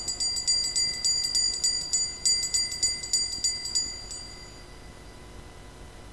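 Altar bells rung in a rapid shaken peal for about four seconds, high-pitched and jingling, then dying away. They mark the elevation of the host just after the words of consecration at Mass.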